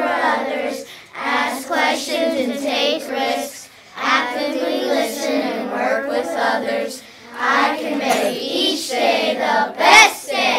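A group of children singing together in unison, in phrases of a few seconds each with short breaths between them.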